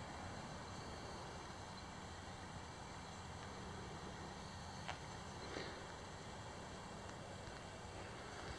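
Faint outdoor ambience: a steady low hum and hiss, with two soft ticks around the middle.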